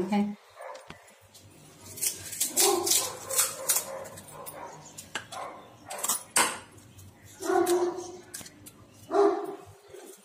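Crisp fried puri shells crackling and snapping as fingers break them open and stuff them with potato filling. Three short pitched calls come in between, the loudest near the end.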